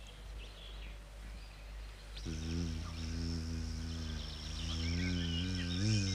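Low, steady buzzing drone of a bumblebee sound effect, starting about two seconds in and wobbling in pitch near the end, over faint hiss.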